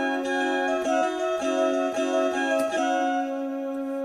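Instrumental keyboard music: a melody of short notes over a steady held low chord.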